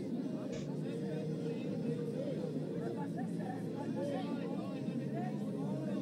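Arena crowd babble: many spectators talking and calling out at once, a steady overlapping chatter of voices.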